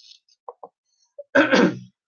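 A man clearing his throat once, a short rasp about one and a half seconds in, preceded by a few faint mouth clicks.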